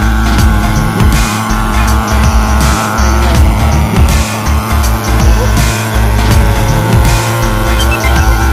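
Background music with a heavy, pulsing bass beat.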